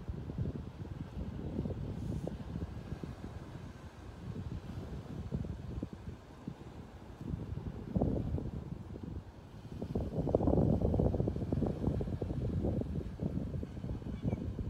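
Wind buffeting the microphone in uneven low gusts, strongest about ten seconds in.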